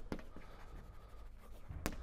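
Chalk writing on a blackboard: faint scratching with a few sharp taps of the chalk, the loudest one near the end.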